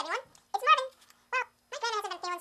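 Four short, high-pitched vocal calls, each rising and falling in pitch, the last running on past the others.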